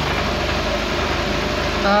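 Carbureted engine idling steadily at about 800 rpm, with its idle mixture screw set too lean.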